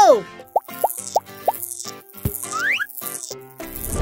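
Cartoon sound effects over light children's background music: four quick plops about a third of a second apart, then a short falling swoop and a rising whistle-like glide.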